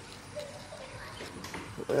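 Sandpaper rubbed by hand over a fiberglass door panel to smooth the filler.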